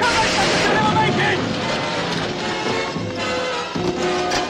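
Film score music with held notes over a loud rushing, hissy noise that is strongest in the first two seconds.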